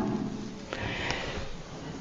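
Pause in a man's speech: one audible breath drawn in, starting under a second in and lasting under a second, over faint room tone.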